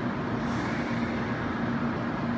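N700A series Shinkansen standing at the platform, its onboard equipment running with a steady hum and noise, and a brief high hiss about half a second in.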